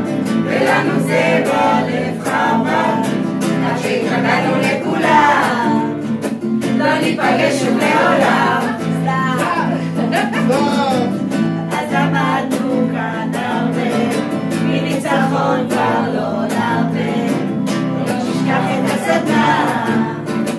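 A group of men and women singing a song together, accompanied by a strummed acoustic guitar.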